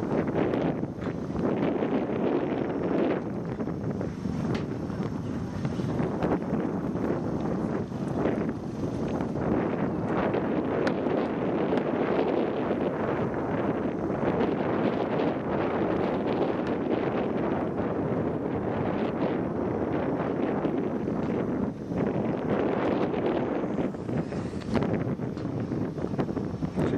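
Wind blowing across the microphone: a steady rushing noise.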